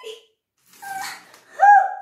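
Water poured from a plastic jug onto a cloth teddy: a faint splash about a second in. It is followed near the end by a short, loud vocal cry that rises and falls in pitch.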